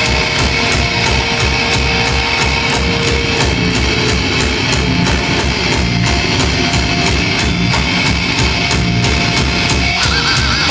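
Metalcore band playing live: distorted electric guitars over fast drumming with a steady, even beat, recorded from within the crowd.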